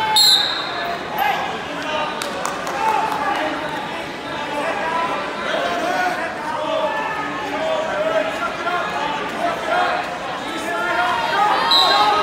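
Several people's voices at once, talking and calling out, echoing in a large gym. There is a short high squeak right at the start and again near the end, and a few light knocks about two to three seconds in.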